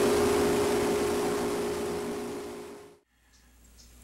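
Small metal lathe running, turning a wooden workpiece: a steady whine over a hiss that fades away and stops about three seconds in.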